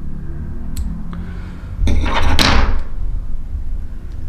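Small scissors snipping fiber ends at a fly-tying vise, two faint clicks about a second in, over low handling rumble. A brief rustling hiss in the middle is the loudest sound.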